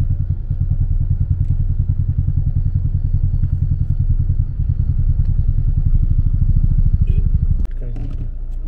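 Vehicle engines idling in stopped traffic: a loud, low, rapidly throbbing engine rumble that cuts off abruptly just before the end.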